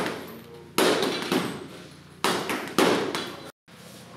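Boxing gloves punching a heavy bag: about four sharp blows in two quick pairs, each ringing out briefly in the room.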